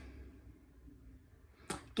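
Quiet room tone in a small room, with one brief soft rush of noise near the end.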